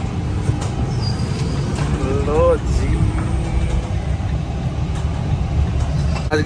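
Engine and road rumble heard inside a van's cab while driving through town, a steady low drone throughout.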